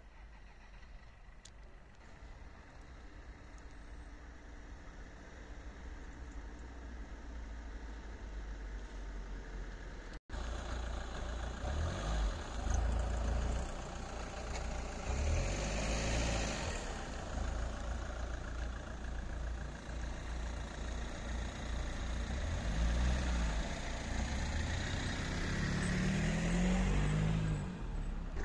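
Car engines idling on the road, with a low steady rumble. Faint at first, then louder after an abrupt break about ten seconds in.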